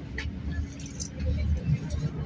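Ride noise inside a moving train carriage: a steady low rumble with a few sharp clicks and rattles.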